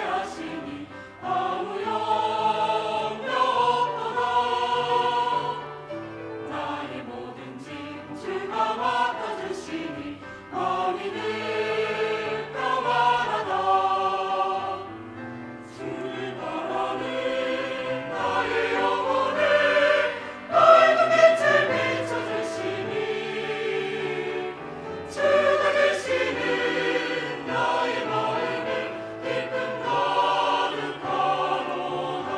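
Mixed-voice church choir singing a hymn in Korean, in phrases of held notes.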